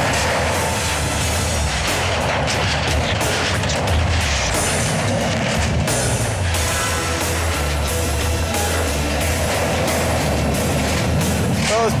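Background music over hydraulic demolition shears on an excavator cutting a Hardox 450 steel container with Hardox 600 jaws: repeated sharp cracks and crunches of steel giving way, over the excavator's steady running. A voice begins at the very end.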